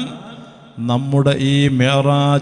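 A man chanting a religious recitation in long held notes; his voice breaks off at the start with a fading echo, then resumes a held note a little under a second in.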